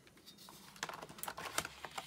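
A few light clicks and taps of a plastic CD jewel case and cardboard album packaging being handled on a wooden table.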